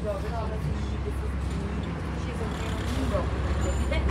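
Steady low drone of the boat's engine, with voices talking faintly in the background.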